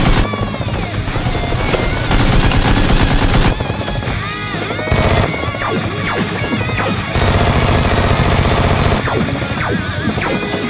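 Rapid automatic gunfire in two long bursts, about two seconds in and again about seven seconds in, dubbed over toy blaster fire, with background guitar music running underneath.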